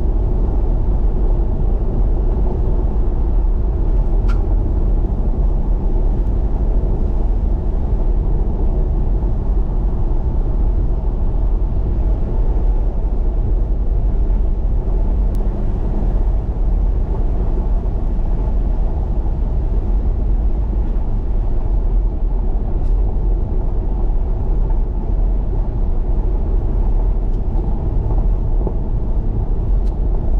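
Car driving along a gravel road, heard from inside the cabin: a steady low rumble of tyres on the gravel and the engine, with a few faint ticks.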